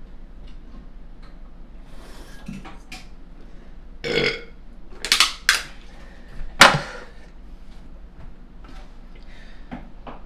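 A man burping loudly after gulping a carbonated cola: about four burps in quick succession starting about four seconds in, the last the loudest.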